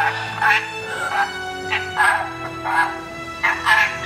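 Red-lored Amazon hybrid parrot giving a run of short, speech-like chattering calls, about two a second, over background music with long held notes.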